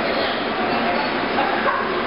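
Crowd chatter: many people talking at once.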